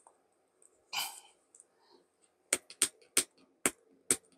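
Fingers picking at the sealed tab of a cardboard box: a brief scrape about a second in, then four sharp clicks in quick succession near the end as the flap is pried.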